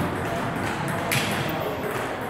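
A celluloid-type table tennis ball giving one sharp click about a second in, as it bounces on the hard floor after the rally has ended.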